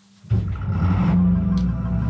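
A boat's inboard engine catches suddenly about a third of a second in and settles into a steady, low, even rumble at idle.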